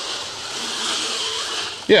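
Power wheelchair's electric drive motors running as the chair turns under joystick control, a steady whir with a faint hum in the middle.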